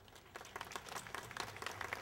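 A crowd applauding, the clapping starting a moment in and growing louder.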